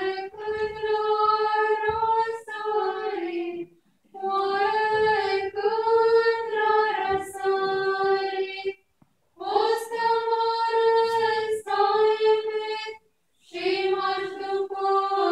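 A choir of Orthodox nuns chanting a cappella in high women's voices. The chant comes in sustained phrases with short breaks about four, nine and thirteen seconds in.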